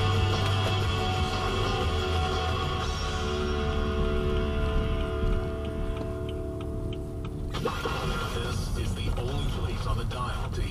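Car radio playing a song that fades to a few held notes and ends, after which a radio announcer's voice starts near the end.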